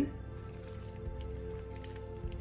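Quiet background music, with faint wet squelching from a thick silken tofu mixture being stirred through vegetables in a frying pan with a wooden spoon.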